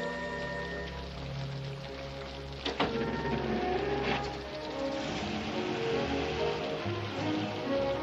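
Orchestral film score with soft held chords, then a melody line picking up in the second half. A sharp knock about three seconds in and a weaker one about a second later; from the middle on, a steady hiss of falling rain sits under the music.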